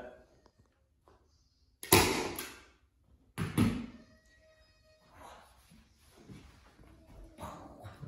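Loud knocks from upholstering a fabric-wrapped wooden headboard panel on a hard floor, one about two seconds in and another pair around three and a half seconds, followed by fainter taps.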